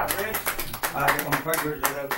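A few people clapping unevenly in a small room, with voices talking over the claps, as the karaoke backing music stops right at the start.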